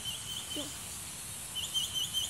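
A bird chirping: a quick run of short, high, hooked chirps, about five a second, in two bouts, one at the start and another from about one and a half seconds in.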